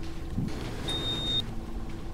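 Instrumental passage of a trap-style track with deep bass and held low tones, and a short high beep about a second in.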